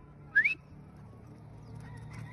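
One short, sharp whistle rising in pitch about a third of a second in: a person whistling to call a dog back.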